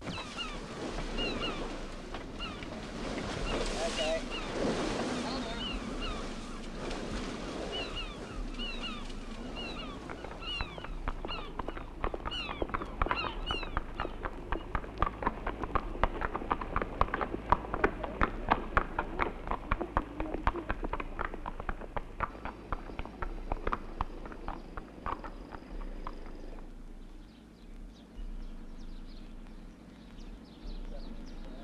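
Birds chirping in short rising calls, joined and then replaced by a long run of quick, irregular clicks or knocks, several a second, that dies away a few seconds before the end.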